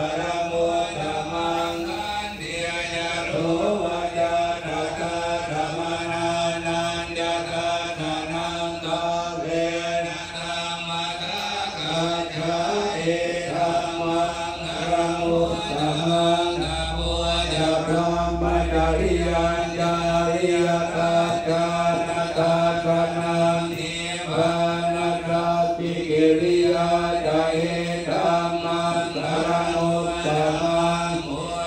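Thai Buddhist monks chanting together in unison, amplified through a microphone. The recitation is steady and stays mostly on one low pitch.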